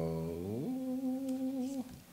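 A person humming a long drawn-out note, starting low and gliding up to a higher pitch about half a second in, then holding it until it stops just before the end.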